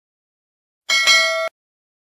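A short notification-bell chime sound effect: several clear ringing tones at once, starting about a second in and cutting off after half a second.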